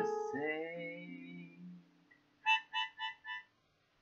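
A man's sung note trailing off over an acoustic guitar chord that rings and fades over about two seconds. Then come four short, evenly spaced high notes in quick succession.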